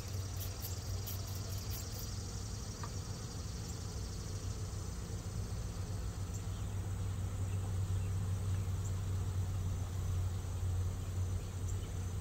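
A steady low hum throughout, with insects chirring faintly high above it. In the first two seconds a hand spray bottle gives a few quick squirts of sugar water.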